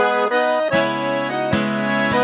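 Piano accordion playing held chords over steady bass notes, with acoustic guitar strummed twice, about a second and a half apart: an instrumental sertanejo passage that starts suddenly right after an unaccompanied vocal line.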